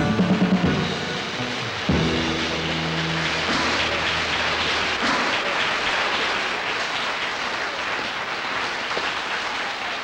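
A pop-rock band with drums finishing a song: a few beats, then a final chord struck about two seconds in and held briefly. After it, a steady noisy hiss fills the rest.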